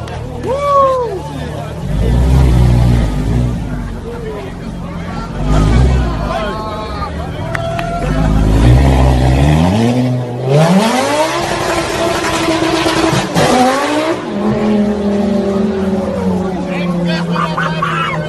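Lamborghini Gallardo's V10 revving up and down again and again as the car spins donuts, then a long rising rev with tyre noise about ten seconds in as it pulls away, settling to a steadier engine note near the end.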